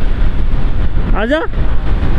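Wind rushing and buffeting over the microphone of a Yamaha sport motorcycle ridden at road speed, with the bike's running underneath; a short shout breaks in about a second in.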